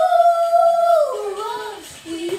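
A human voice howling like a wolf: one long, high call held level for about a second, then sliding down in pitch and trailing off.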